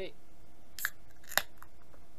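Pull-tab of an aluminium beer can being opened: two short, sharp snaps about half a second apart, the second louder.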